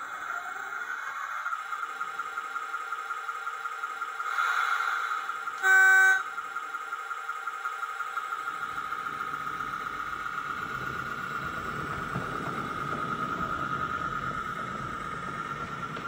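Small narrow-gauge G-scale model locomotive running along the track with a steady pulsing whine. It gives one short loud toot about six seconds in, and a low rumble joins from about halfway.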